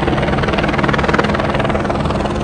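Helicopter flying nearby, its rotor blades giving a loud, steady, rapid beat.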